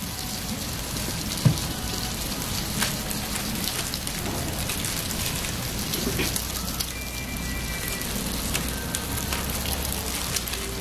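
Butter and bread sizzling on a hot flat-top griddle, a steady crackling hiss full of small pops, with one sharper knock about a second and a half in.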